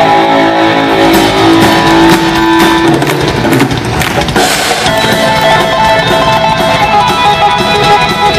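Live electric guitar solo through an amplifier, with held, ringing notes. About a second in, the drums and bass come in beneath it and carry on with the guitar.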